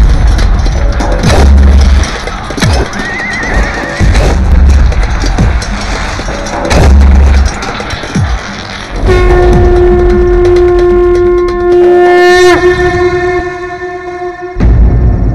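Battle-scene film soundtrack: music with deep drum hits about every three seconds and falling whooshes. About nine seconds in comes a long, steady, horn-like note with rich overtones, held until near the end.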